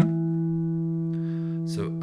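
A single D note on a Dowina Hybrid nylon-string guitar with a solid spruce top and granadillo back and sides. The note drops in level right at the start and then rings on steadily with a long, slow decay: the sound that keeps going is the sympathetic resonance of the other strings.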